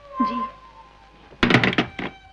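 A rotary desk telephone's handset is set down onto its cradle, making a short clatter of several knocks near the end.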